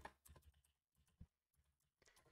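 Faint computer keyboard typing: a few scattered key clicks in the first half second and a single click near the middle.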